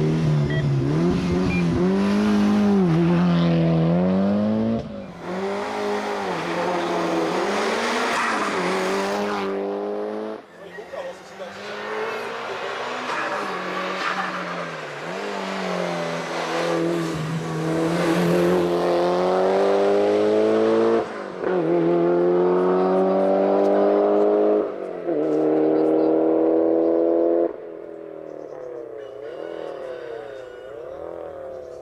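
Mitsubishi Lancer Evo 8's turbocharged four-cylinder engine under hard acceleration, revs climbing and dropping sharply at each gear change, several times over. Near the end it falls to a quieter, more distant engine sound.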